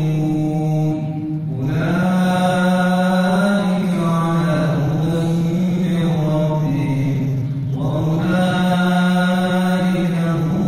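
A man chanting solo into a microphone in long, held melodic phrases, breaking briefly for breath about a second and a half in and again near eight seconds.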